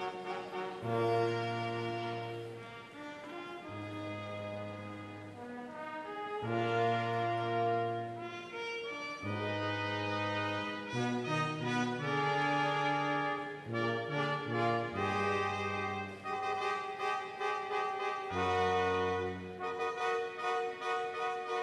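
Brass ensemble playing slow, held chords that change every second or two, with the lines moving faster in the second half.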